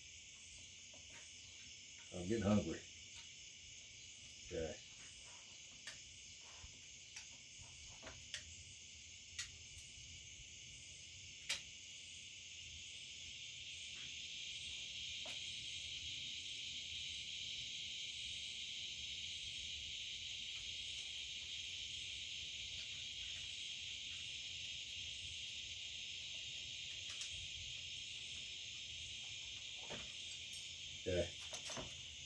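A steady, high-pitched chirring of night insects that grows louder about twelve seconds in. Over it, in the first half, a few light metallic clicks of small rifle parts being handled and fitted.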